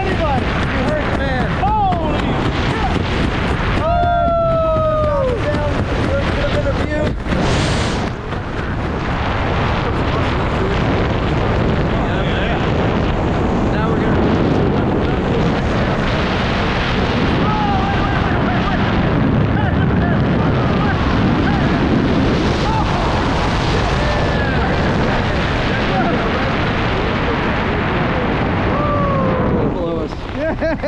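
Wind rushing over the microphone of a wrist-mounted camera during a tandem parachute descent under an open canopy, a steady loud rush throughout. Short whooping voice calls break through it a few times.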